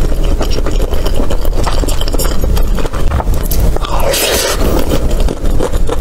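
Close-miked chewing of a mouthful of saucy rice, with dense wet mouth clicks and crackles. A brief breathy hiss comes about four seconds in.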